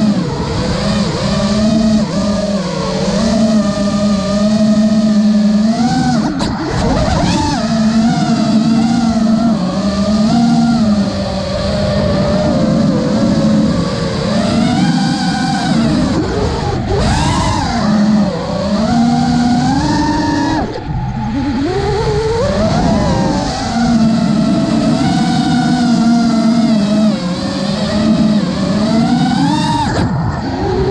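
FPV freestyle quadcopter's brushless motors and propellers whining, the pitch climbing and falling constantly as the throttle is worked. The sound drops briefly about two-thirds of the way through as the throttle is cut.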